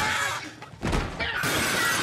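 Glass and jars crashing and shattering as things are knocked off a kitchen counter, then from about a second in a man screaming in one long held cry over the clatter.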